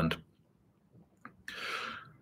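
The last syllable of a man's speech dies away, a small click follows, then a short intake of breath about one and a half seconds in, just before he speaks again.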